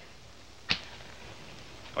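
A single sharp click over the faint steady hiss of an old film soundtrack.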